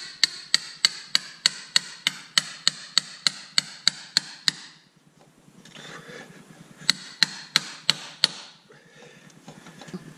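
Hammer striking a metal rod set in a crankshaft's pilot-bearing bore packed with bread, sharp ringing metallic blows about three a second. The blows stop about halfway through and resume for a few strikes near the end. The bread is being driven in to force the pilot bearing out.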